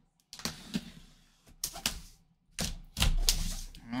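A blade slicing through packing tape on a cardboard shipping box, with irregular sharp clicks and knocks of the cutter and hands against the cardboard. The sound grows louder for a moment about three seconds in.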